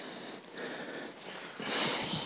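Faint steady hiss, then near the end a louder hiss of water from a garden hose running into the empty 40-gallon plastic Brute trash can, as the brewer starts to be filled.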